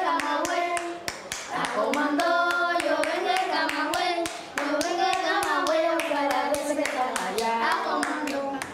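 A group of children singing together while clapping their hands in a steady rhythm, with two short breaks in the singing.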